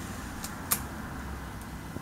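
Low steady room hum with a single short click about three-quarters of a second in.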